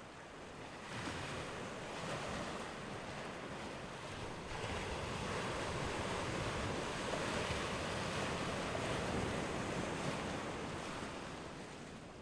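Ocean surf: waves washing onto a shore. It swells about a second in, swells again more loudly about four and a half seconds in, then slowly ebbs toward the end.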